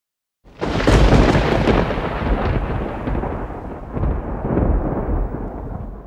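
A rolling thunder rumble that breaks in suddenly about half a second in, swells again about four seconds in and dies away at the end, laid over the intro as a sound effect.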